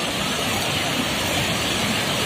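Ocean surf breaking and washing over the shallows, a steady loud rush of water.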